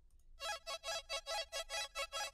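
Arpeggiated synth from a Serum patch, playing fast pulsing notes about four a second with a tremolo-style bounce. It starts about half a second in, after a short silence, and has no drums or bass under it.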